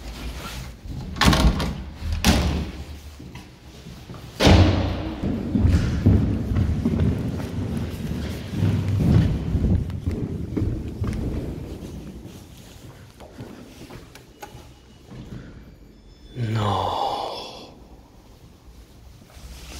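Old lift doors being shut: a few heavy thuds and slams, the loudest about four seconds in, followed by a low rumble that fades away. A short pitched sound comes near the end.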